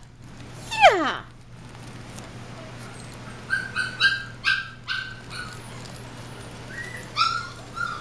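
Young puppies whining and yipping: one falling whine about a second in, then a run of short, high yips in the middle and a couple more near the end.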